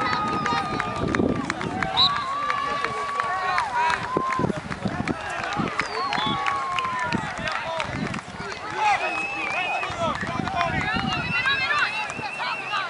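Shouting from soccer players and sideline spectators during play. Several voices overlap without clear words, and some calls are held for up to a second.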